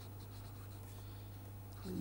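Pen writing on paper: faint scratching strokes as letters are written, over a steady low hum.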